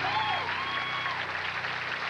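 Studio audience applauding, with a couple of whistles that glide down in pitch, over the band's held closing chord.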